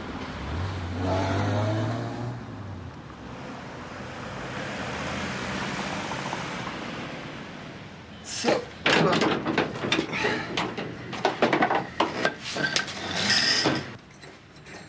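A low engine hum, then a vehicle going past, the noise swelling and fading. From about eight seconds in comes a quick, irregular run of sharp knocks and clatters.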